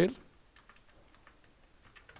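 A few faint, scattered computer keyboard clicks.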